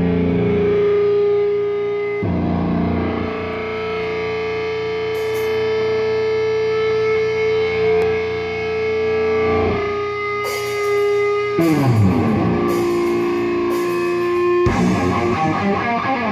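Live doom-metal band: heavily distorted electric guitars holding long sustained notes, then sliding down in pitch about twelve seconds in. Cymbal crashes come in during the second half.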